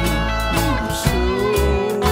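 A live band song: guitars playing, with a lead line that bends and slides in pitch, over drums keeping a steady beat.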